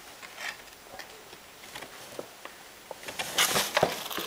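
Paper bags and newspapers rustling and crinkling as a cat shifts around inside them: faint scattered rustles at first, then louder, busier crackling in the last second.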